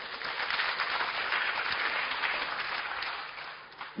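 An audience applauding, swelling over the first second or two and then fading out just before the end.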